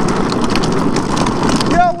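Drift trike rolling fast on a paved path: a steady rolling rumble with many small rattling ticks from the frame and wheels. A voice cuts in near the end.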